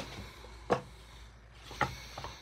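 A rigid knife presentation box being opened by hand: two sharp knocks of the lid and box, about a second apart, over light handling rustle.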